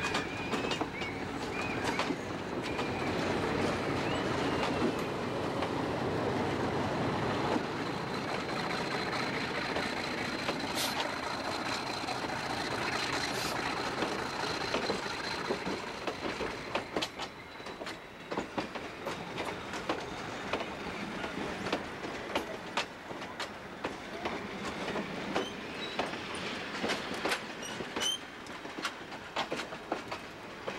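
Alco RS11 1800-horsepower diesel locomotive running past close by, then passenger coaches rolling past with their wheels clicking over rail joints. A thin high wheel squeal runs through the middle.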